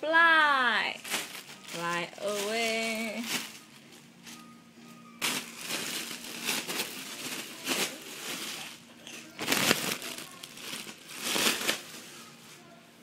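A baby squeals, the pitch falling, then babbles in high voiced sounds for the first few seconds. From about five seconds in, a foil balloon crinkles and rustles as it is pushed around the playpen, with the loudest crackles near ten seconds and again near eleven.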